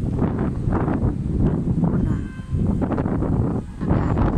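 Wind buffeting a phone's microphone, a steady heavy low rumble, with a woman's voice faint beneath it.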